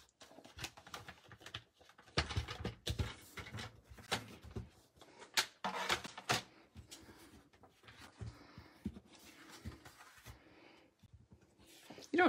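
Cardstock being trimmed on a paper trimmer and handled on a tabletop: irregular rustling, sliding and scraping with light taps.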